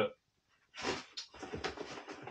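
Rustling and handling of packaging inside an opened cardboard parcel: a few short, noisy scuffs and rustles, with a light clack about a second in.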